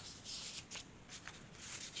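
Paper rustling and sliding as sheets are handled and pulled from a paper pocket in a handmade journal, in several short, soft strokes.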